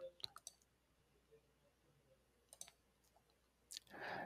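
Near silence with a few faint, short clicks: a handful at the start, a couple about two and a half seconds in, and one or two near the end.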